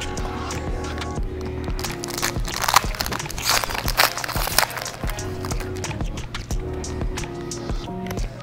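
Background music with steady held tones, and the crinkling of a trading-card pack's foil wrapper being torn open, densest about three to four and a half seconds in.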